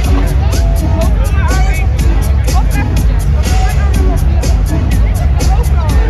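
Loud dance music from a DJ set over a stadium PA, with heavy bass and a steady hi-hat beat, while crowd voices shout and chatter close to the microphone.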